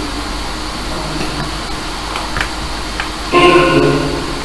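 Ghost-box software output: a steady hiss of static with a few faint clicks, then, about three seconds in, a short louder pitched snippet cut from the sweep.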